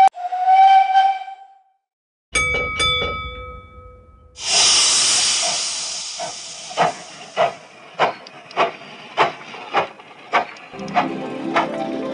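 Steam-train sound effects from the LEGO train-control app. There is a short steam-whistle toot, two bell strikes, then a long steam hiss that fades into evenly spaced chuffs about every 0.6 s. A tune starts near the end.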